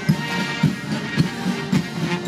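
Military band of brass and drums playing, with a steady drum beat of about two strokes a second under sustained brass chords.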